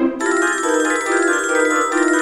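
Instrumental piece played back by MuseScore notation software, with held chords underneath. About a fifth of a second in, a bright layer of rapidly repeating high notes comes in suddenly over them.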